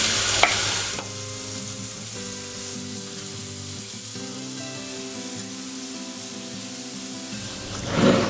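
Mushrooms sizzling as they fry in a frying pan. The sizzle is loudest in the first second, then drops to a quieter hiss. Soft background music plays underneath from about a second in.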